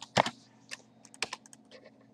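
Typing on a computer keyboard: one sharp, loud key click just after the start, then a quick, uneven run of about half a dozen lighter keystrokes as a parameter value is entered.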